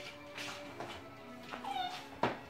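Background music playing, with a puppy giving one short whine that falls in pitch near the end.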